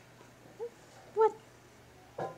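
Domestic cat giving two short meows a little over half a second apart, the second louder; the owner calls it a goat-like meow, the cat's way of asking for food.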